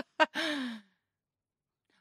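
A woman's short breathy sigh, falling in pitch, just after a couple of quick vocal blips at the start.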